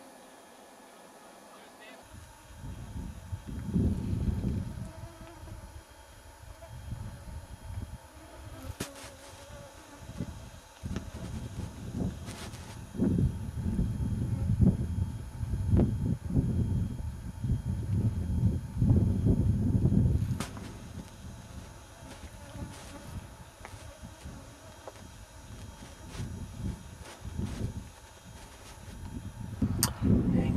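Wind buffeting the microphone in gusts: a low rumble that comes and goes, starting about two seconds in and strongest in the middle of the stretch, with a few faint clicks.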